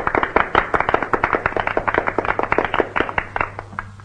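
Audience applauding, with many hands clapping at once; the applause thins out and dies away shortly before the end.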